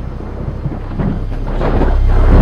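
Thunder rumbling over a deep steady low drone, growing louder toward the end.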